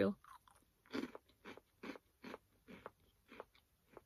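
A person chewing crunchy vanilla-filled cereal pillows, a short crunch every half second or so.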